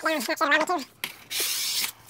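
A steel drywall knife scraping through wet joint compound, one stroke lasting just under a second about halfway in.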